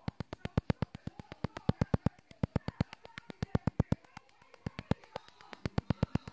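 Ultrasonic skin scrubber running in its infusion mode, pressed against the skin and giving a steady, rapid ticking of about eight ticks a second.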